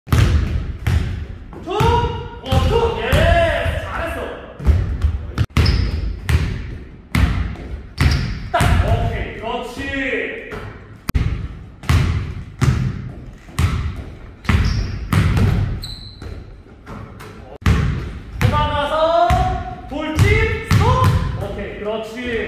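Basketball dribbled hard on a hardwood court, bouncing in a quick, steady rhythm of about two bounces a second, broken by short pauses between moves.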